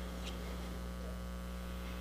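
Steady low electrical mains hum in the sound system, with a faint click about a third of a second in.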